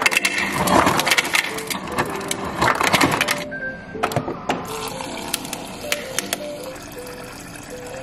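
Background music plays over a refrigerator door dispenser dropping ice cubes into a plastic tumbler, a dense run of clattering clicks for the first three or so seconds. After that, quieter water runs into the cup.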